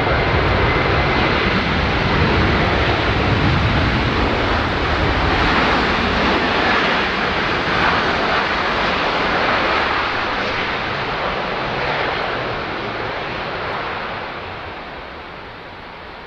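Lockheed C-5M Super Galaxy's four General Electric F138 turbofan engines running loud during its landing rollout, with a high whine in the first couple of seconds. The noise fades steadily over the last several seconds as the aircraft slows.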